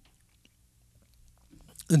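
A pause in a man's talk: near silence with a few faint mouth clicks, then a breath and his voice resuming near the end.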